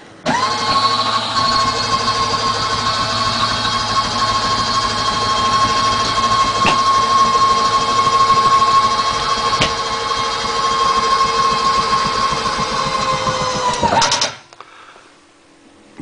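Electric slide-out motor of the trailer's kitchen slide running as the slide moves: a steady whine with a low hum, which starts abruptly, holds even for about fourteen seconds with a couple of light clicks, then winds down and stops.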